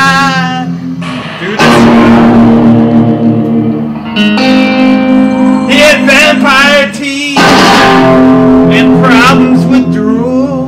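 A rock band playing with guitar to the fore. New guitar chords are struck about every three seconds under a wavering melody line with vibrato.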